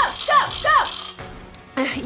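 Fan noisemakers: a hand-spun ratchet rattle clattering along with three short rising-and-falling hoots, stopping suddenly about a second in.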